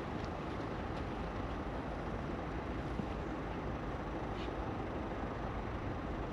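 Steady, even outdoor background noise with no distinct event.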